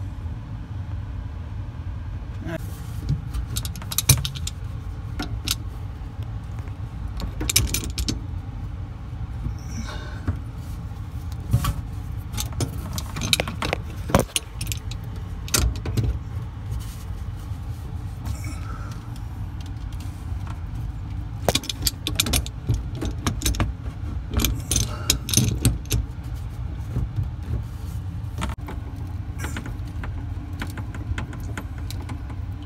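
Adjustable wrench working the metal fittings of the faucet's water supply lines under a kitchen sink: irregular metal clicks and knocks as the connections are loosened, over a steady low hum.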